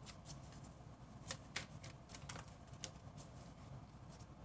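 A deck of tarot cards being shuffled by hand: faint, irregular card flicks and slaps, with a few sharper clicks a little over a second in and again near three seconds.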